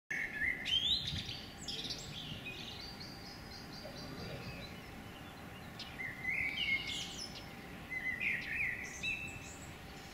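Songbirds chirping and singing over a faint steady outdoor background. The song comes in two spells: one in the first two seconds and another from about six seconds in.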